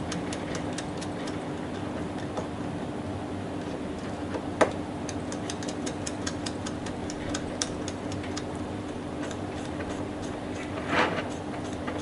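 Hex driver turning a 3x18 mm screw into a 3Racing Mini-MG RC car's plastic chassis: a string of small irregular clicks, several a second, with a sharper click about four and a half seconds in, over a steady low hum.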